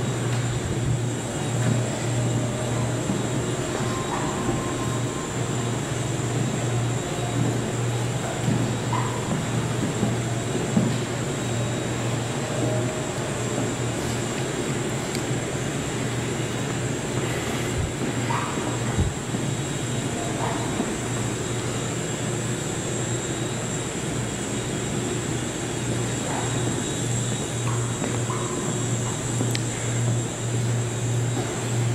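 Steady low hum with a thin, faint high-pitched whine above it: the background hum of a quiet room, with a few faint short knocks now and then.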